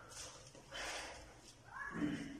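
Shuffling and rustling as a person sits down on a tiled floor in flip-flops. Near the end comes a brief high-pitched sound that rises in pitch.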